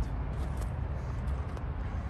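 Steady low background rumble with a light even hiss, with no single event standing out.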